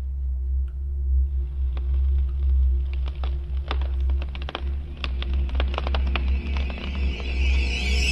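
Horror-film underscore: a deep, steady low drone under a held note, with scattered sharp clicks through the middle and a high, wavering sound coming in near the end.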